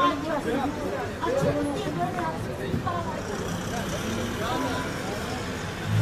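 Indistinct chatter of several people talking at once, over the low noise of street traffic.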